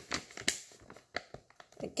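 A few short crinkles and clicks from a paper-and-plastic sterilization peel pouch being handled.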